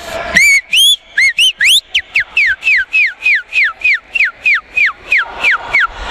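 Broadcast sound effect of whistle-like chirps: a few sharp rising chirps, then about a dozen quick falling chirps at two or three a second. It marks the game-clock display.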